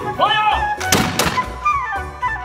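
A volley of black-powder muskets fired by a rank of uniformed reenactors. It is heard as two sharp reports close together about a second in, with ringing after them.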